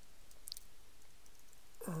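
Computer keyboard typing: faint, scattered key clicks as a few words are typed.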